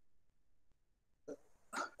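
Near silence on a noise-gated video-call line, broken near the end by two brief, faint sounds just before the lecturer speaks again.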